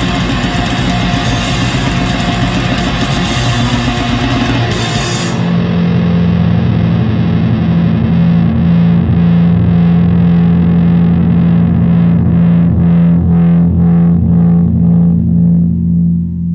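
Distorted heavy metal: the full band with drums and cymbals plays until about five seconds in, then the drums stop and a single low distorted guitar chord is left ringing, pulsing slightly, as the song's closing chord.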